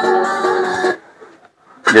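Music with sustained chords played through a 15-inch active PA speaker cuts off just under a second in, leaving near silence for about a second as the track is changed. Sound comes back loudly near the end.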